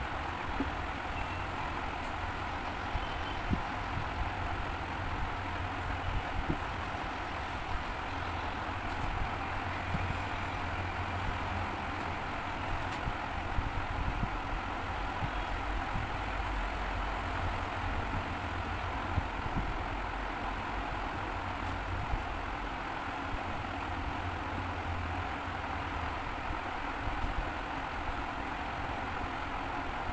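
Steady low rumble and hiss of background noise, like a distant engine or a running fan, with occasional faint ticks.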